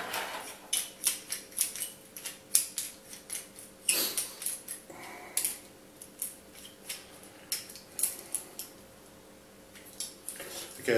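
Small hand tube cutter being clamped onto and turned around a thin copper tube, giving irregular sharp metallic clicks and ticks that thin out near the end.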